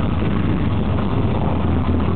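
Black metal band playing live at full volume: fast distorted guitars and drums merged into a dense, overloaded wall of sound with a heavy low rumble, as picked up by a camera in the crowd.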